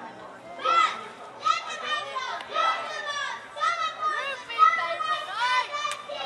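Children's high-pitched voices calling out and exclaiming in short bursts, one after another.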